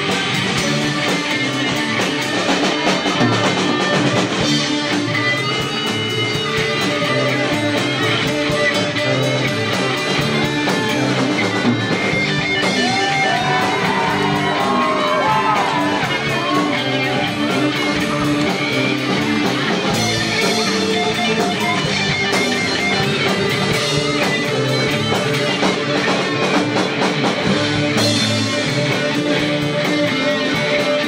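A live rock band playing an instrumental piece: electric guitars over bass and a drum kit, at a steady loud level.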